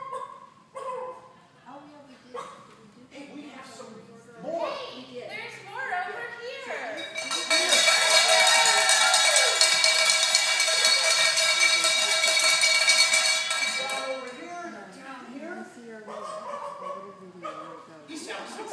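A person imitating a chicken: shorter clucking cries, then one long, loud, rattling squawk lasting about six seconds from about seven seconds in, followed by quieter cries.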